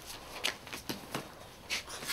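A few faint, short clicks and rustles, spaced irregularly.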